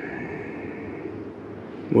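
Steady low background noise with no clear pattern, and a faint high hum during the first second.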